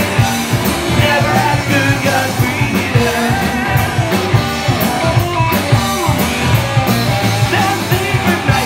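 Live punk rock band playing: electric guitars, bass and drums with a steady beat of cymbal and drum hits, and a singer's voice over the top.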